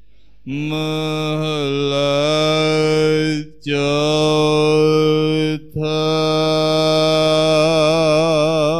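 A Sikh granthi's voice chanting Gurbani into a microphone in long, drawn-out held notes. There are three phrases with short breaks for breath, and the last one wavers in pitch.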